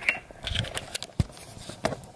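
Handling noise: a few sharp clicks and knocks over light rustling, the strongest a little after a second in and another near the end, as the camera is picked up and moved.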